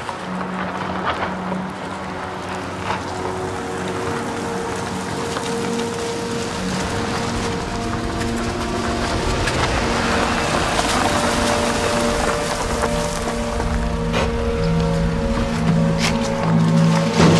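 A car driving slowly along a dirt track, its engine and tyre noise growing louder as it approaches, under a sustained dramatic music score.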